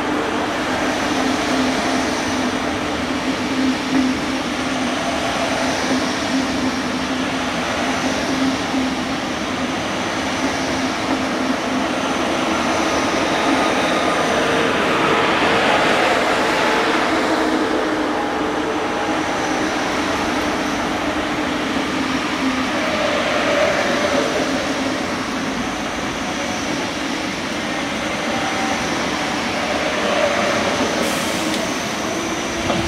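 German ICE electric high-speed train running past, its cars rolling by in a continuous rush of wheels on rails with a steady hum underneath, swelling a little about halfway through.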